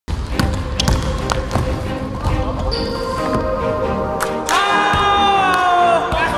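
A basketball dribbled on a gym's hardwood floor: a string of sharp bounces with music underneath. About four and a half seconds in, a long, loud held pitched sound, falling slightly, takes over.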